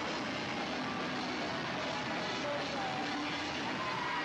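Live hardcore punk band playing at full volume with the crowd, captured as a dense, steady wash of distorted guitars and drums in which little stands out.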